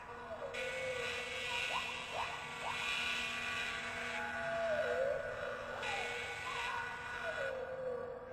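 Sci-fi flying-saucer sound effect: a steady electronic hum with a falling, warbling swoop about every two and a half seconds, over a hiss that cuts in and out.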